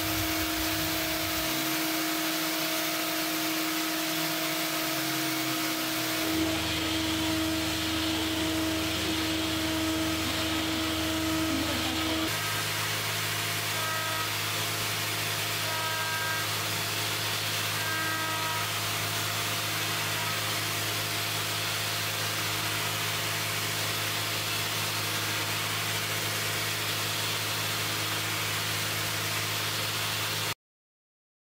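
CNC machining center milling hardened steel with a 6 mm carbide ball end mill: a steady spindle whine over a constant hiss. The pitch of the whine shifts about six seconds in and again about twelve seconds in.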